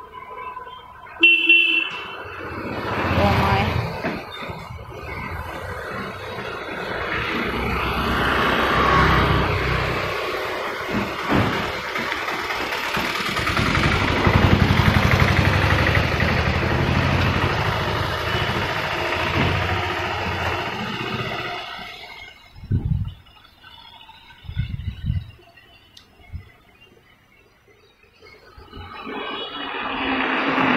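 A short vehicle horn toot about a second in, then road traffic passing: engine and tyre noise swelling to a peak around the middle and fading away after about twenty seconds.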